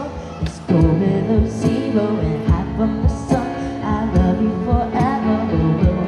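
Music played on a keyboard with a steady drum beat, about two beats a second, and a melody line over held chords.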